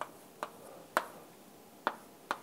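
Chalk tapping against a blackboard during writing: four short, sharp taps at uneven intervals, the loudest about a second in.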